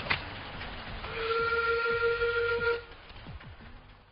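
Miniature railway locomotive sounding its whistle: one steady blast of about a second and a half, over the low rumble of the train running along the track.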